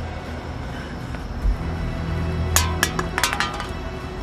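Low, droning suspense film score, with a dull thump about one and a half seconds in and a quick cluster of sharp, ringing clinks about halfway through.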